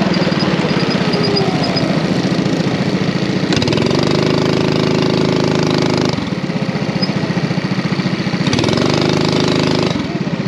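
Racing kart engine running under throttle on track. Its pitch climbs as it accelerates about three and a half seconds in and holds high, drops off about six seconds in, then climbs again near the end.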